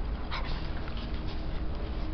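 A three-month-old puppy making a brief vocal sound about a third of a second in, over a steady low rumble.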